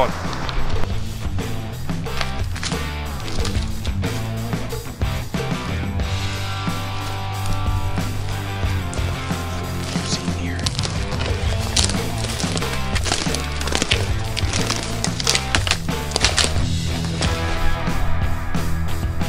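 Background music: a track with a stepping bass line, pitched instrument lines and a steady drum beat.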